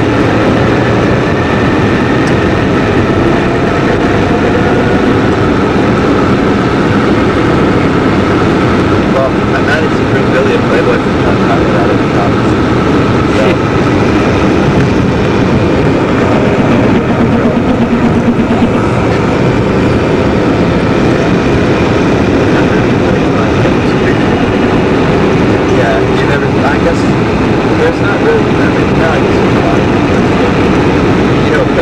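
Steady engine and road noise inside a moving taxi's cabin, with indistinct talk mixed in.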